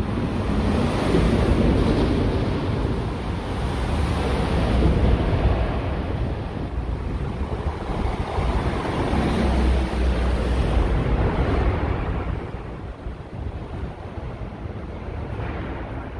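Road traffic, including heavy lorries, driving through a road underpass: a continuous rushing roar that swells twice and eases toward the end, with wind buffeting the microphone.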